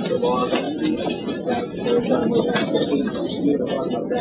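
Indistinct voices of people talking in a small room, a question-and-answer exchange that the recording does not make out as words.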